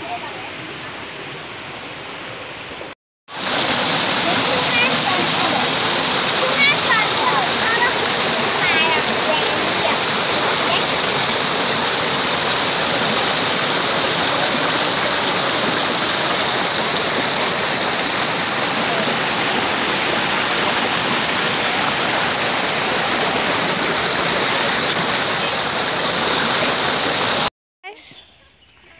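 A small waterfall: water pouring over rocks, heard close up as a loud, steady rush. It is fainter for the first few seconds, then cuts out briefly before the loud part.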